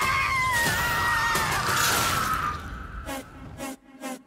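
A woman's long scream, slowly falling in pitch, over a dense crashing noise and film-trailer music. It fades out about two and a half seconds in, and a fast pulsing beat, about four hits a second, takes over near the end.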